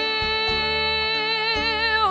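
A woman's singing voice holding one long note with a light vibrato, over soft instrumental accompaniment.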